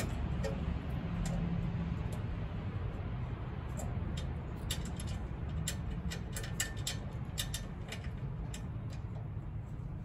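Light metallic clicks and ticks of an Allen key working screws into a stainless steel mounting bracket, coming in a scattered run through the middle of the stretch, over a steady low background rumble.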